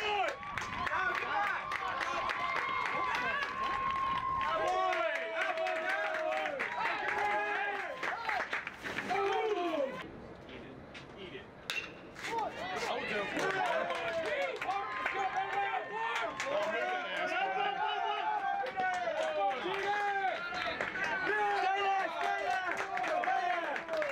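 Spectators' voices shouting and calling, many overlapping, with a brief lull about ten seconds in.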